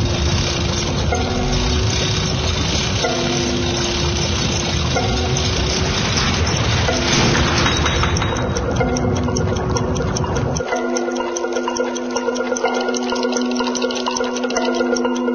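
Cartoon soundtrack: a short low musical figure repeats over a loud, steady rumble, which cuts off about ten seconds in. From about eight seconds in, a fast, even clock-like ticking joins, in keeping with the timekeeper's count.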